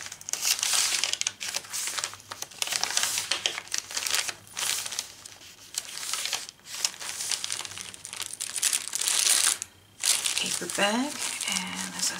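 Paper pages and tucked-in paper scraps of a chunky handmade junk journal rustling and crinkling as they are turned and handled, in a series of bursts with a brief lull about ten seconds in.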